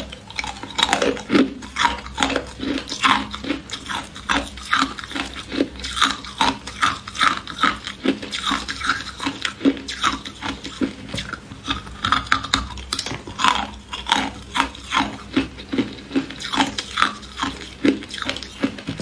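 Ice being bitten and chewed close to the microphone: an unbroken run of sharp crunches, two or three a second.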